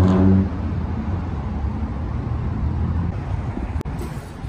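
A motor vehicle's engine running close by with a steady hum for the first half second, then a low, even rumble of cars in the parking lot and road. One sharp click comes near the end.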